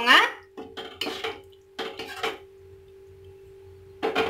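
Metal ladle scraping and clinking against a steel kadai while stirring a thick gravy, in three short bouts over the first two and a half seconds.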